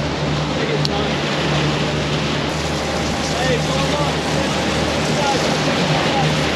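Three Mercury outboard engines running at high trolling speed with a steady drone, under the rush of wind and churning wake water.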